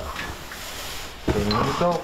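Scrap metal being handled, scraping and rustling for about a second, then a man's voice.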